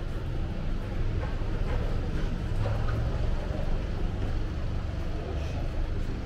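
City street ambience: a steady low rumble of distant traffic.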